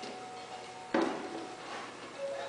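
A single sharp knock about a second in, from a plastic pipe and wet clay being handled on a wooden work board, with faint background music underneath.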